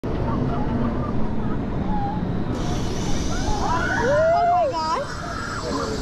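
Wind buffeting the microphone high on a drop tower, with riders' voices and a long wavering cry about four seconds in as the seats tilt face-down before the drop. A thin hiss joins in about halfway through.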